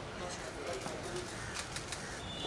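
Indistinct chatter of a crowd of people, with a few brief rustles near the end.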